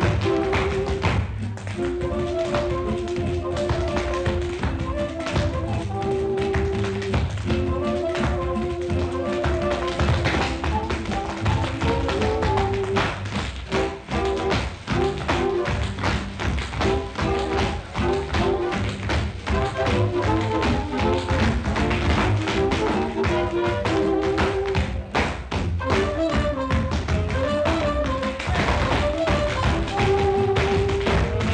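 Rapid tap dancing, metal-tipped shoes clicking and stomping on a hard floor, over a jazz orchestra playing held horn lines. The sound is an early-1930s film soundtrack, with a dull, narrow sound and no crisp top end.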